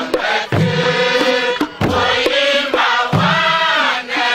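A large crowd singing a song together in unison, many voices at once in a steady chant-like melody.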